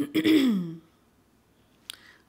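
A person's short wordless vocal sound at the start, falling in pitch over about half a second, then quiet with a brief click near the end.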